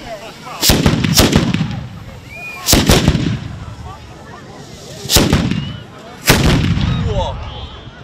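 Black-powder guns firing: six sharp bangs, each trailing off in echo, coming in close pairs about a second in and near three seconds, then single bangs at about five and six seconds.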